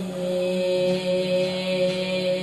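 A person's voice holding one long note at a steady pitch, drawn out like a chant.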